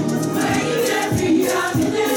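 Church choir singing a praise and worship song together, with a beat thudding underneath about twice a second.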